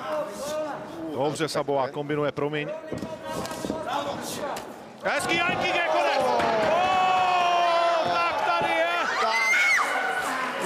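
A commentator's voice, excited, over a knockout in an MMA fight, with a few sharp thuds in the first three seconds. From about five seconds in the voice turns into a long, drawn-out shout.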